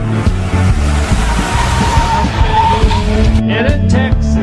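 Car tyres squealing in a skid for about three seconds, a high screech rising out of a hiss, over band music with a steady bass line.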